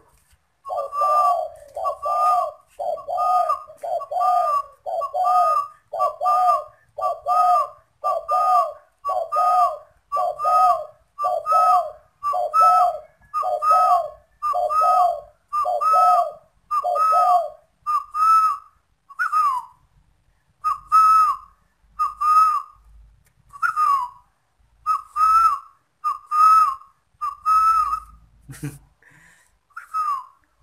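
Caged spotted dove giving its bowing coo, a quick, even series of short coos at nearly two a second. About eighteen seconds in the lower notes drop out, and the remaining coos come more widely spaced.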